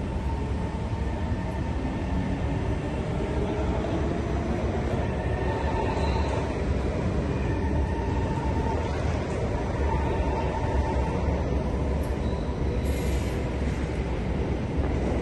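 Kawasaki Heavy Industries C151 metro train moving along the platform behind the screen doors: a steady rumble with a faint whine.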